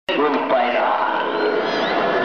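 A large crowd of mourners calling out together, many voices overlapping at once.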